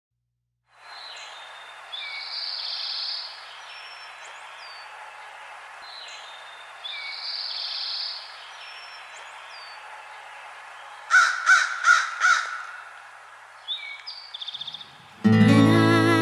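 Outdoor bird ambience with scattered bird calls, then a crow cawing four times in quick succession about eleven seconds in, followed by a short run of chirps. Music starts just before the end.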